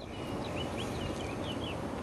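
Steady outdoor background hiss with a faint bird giving a quick run of six or seven short, high chirps in the first second.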